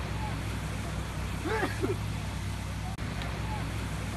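Steady low rumble of wind buffeting the microphone outdoors, with a brief distant voice calling out about one and a half seconds in.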